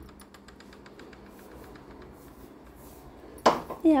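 Faint rapid ticking, then a sudden loud knock about three and a half seconds in as a wooden door with a steel barrel bolt is pulled open. A high voice with a gliding pitch starts just before the end.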